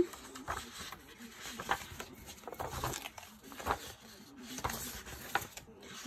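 Sheets of gold-foiled designer series paper being handled and slid over one another: quiet, irregular rustles and light taps.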